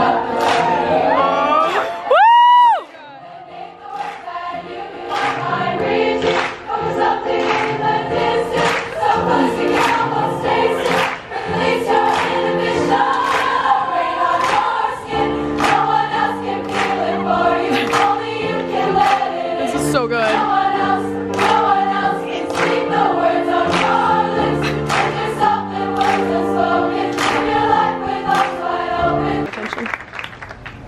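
A large choir of young women singing, with hand claps keeping time about twice a second. About two seconds in, a very loud, close whoop rises and falls in pitch.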